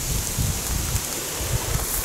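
Wind noise on the camera microphone: irregular low thumps over a steady outdoor hiss.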